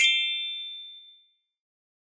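A single bright bell-like ding, an editing sound effect, struck once and ringing out with several high tones that fade away over about a second.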